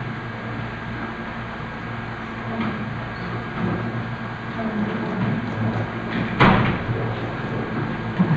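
Room noise with a steady low hum, and a single knock about six and a half seconds in.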